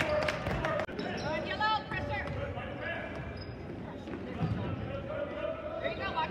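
A basketball bouncing on a hardwood gym floor, with sharp knocks in the first second, mixed with players' and spectators' voices and shouts that echo around the gym.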